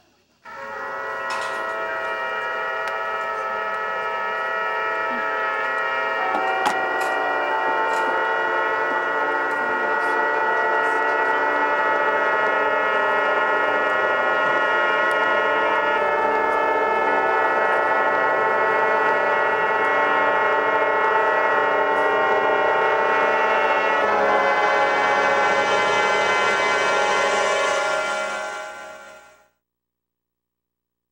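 High school marching band brass section playing long sustained chords, changing chord three times, then fading out near the end.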